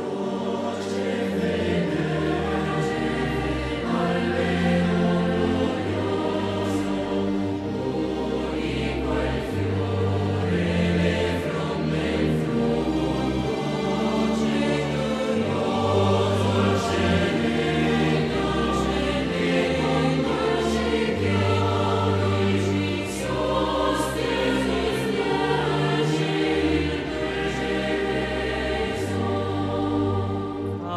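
Choir singing a slow Italian sacred hymn in held notes over a low sustained accompaniment whose bass notes change every second or two.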